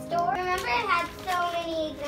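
A young girl singing, with held notes that glide up and down.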